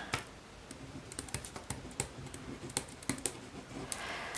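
Pen writing on paper: a run of faint, irregular scratches and taps as words are written out.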